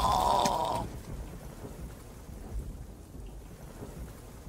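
Low rumble of thunder with a faint rain-like hiss. It follows a held high tone that cuts off under a second in.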